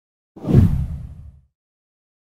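A deep whoosh sound effect for a video intro transition, swelling in about a third of a second in and fading out by about a second and a half.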